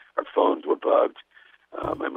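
Speech only: a voice talking over a telephone-quality line cut off above about 4 kHz, with a short pause and a brief low knock near the end.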